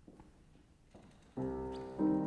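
Quiet at first, then about a second and a half in a Steinway concert grand piano sounds a sudden chord that rings on: the first notes of an aria's piano accompaniment.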